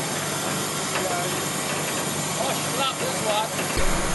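Truck engine running steadily as it powers a truck-mounted crane lifting a load, with faint voices over it.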